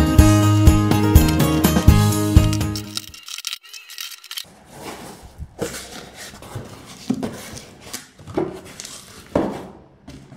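Music with a beat plays for about the first three seconds, then stops. After that, a cardboard box is opened by hand, its flaps and the plastic wrap inside scraping and rustling in irregular bursts.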